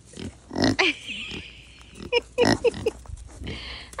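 A kunekune pig grunting in short bursts, one just under a second in and a quick run of them about two seconds in, as it waits for a treat.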